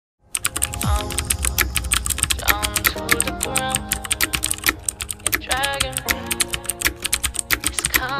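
Keyboard-typing sound effect, a rapid irregular run of clicks, over background music that starts suddenly just after the opening silence.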